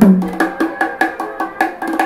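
Double bongo played with the hands in a quick, even rhythm of about five strokes a second.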